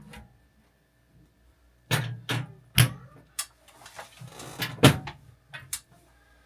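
Hinged metal front cover of an Anker SOLIX Power Dock being swung shut and fitted onto the unit: after a quiet start, a run of about half a dozen sharp knocks and clicks, the loudest about three and five seconds in.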